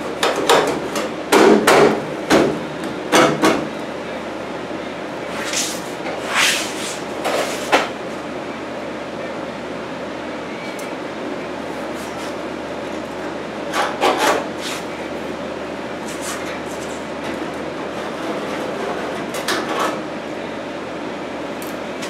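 A thin sheet-steel cab-corner patch panel knocking and scraping against a truck cab as it is fitted, with a steel scribe scratching along it to mark the cut. There are clusters of sharp knocks in the first few seconds, then scattered scrapes over a steady low hum.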